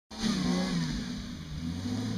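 Off-road Jeep's engine running steadily at low revs as it crawls through deep mud ruts, its pitch easing down slightly in the first second.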